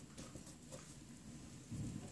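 Faint scratching and light tapping of a felt-tip marker writing on paper, with a short low sound near the end.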